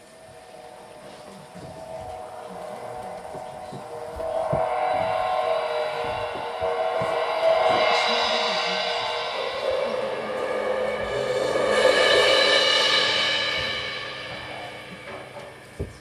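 Live improvised music: long held instrumental tones swell, grow loudest about twelve seconds in, then fade, over scattered soft knocks and taps.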